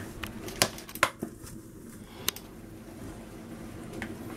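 Metal baking tray being moved and set down on the worktop: a few light knocks and clicks, the loudest about a second in, over a faint steady room hum.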